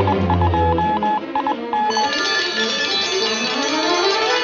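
Cartoon radar beeping in an irregular, Morse-code-like pattern over orchestral background music. The beeping stops about a second and a half in, and the music turns to a busier, shrill passage with rising glides as the radar goes wild.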